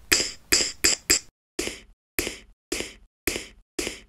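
Layered snare-and-finger-snap drum sample from the Koala Sampler app, triggered by tapping pads: about nine short, sharp hits, the first four quick, then about two a second. The merged snare sounds hardly different from the original.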